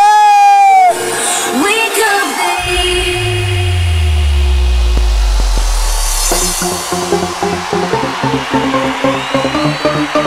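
Loud electronic dance music at a club. A shouted vocal is held for about a second at the start, then a deep bass sweep falls slowly in pitch over a few seconds. A steady beat comes in about two-thirds of the way through.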